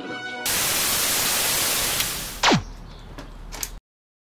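Television static sound effect: a loud hiss starts suddenly about half a second in and fades after a couple of seconds. A single whistle then sweeps quickly down in pitch, followed by fainter crackle with a couple of clicks before it cuts off suddenly.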